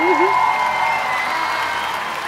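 A crowd cheering and applauding, swelling in and slowly fading, opened by a short warbling, wavering note.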